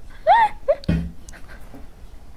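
A woman's stifled, high-pitched giggle: two short squeaky notes that rise and fall, followed about a second in by a brief low voiced sound.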